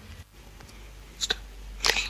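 Quiet hall room tone with two short, sudden breathy noises in the second half, the louder one just before speech starts again.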